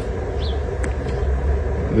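Low, steady outdoor rumble, like distant traffic or wind on the microphone.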